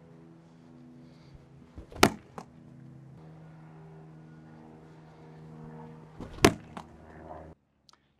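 Two sharp thuds about four seconds apart as a 16-ounce weighted ball is thrown into a wall, each followed by a lighter knock just after. Soft background music with sustained chords runs underneath.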